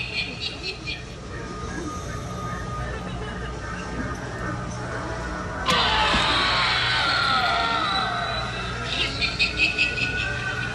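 Background music with a rapid, rhythmic high-pitched rattling in the first second and again near the end, from a moving animatronic scarecrow. About six seconds in a sudden shrill sound starts and falls in pitch over about two seconds.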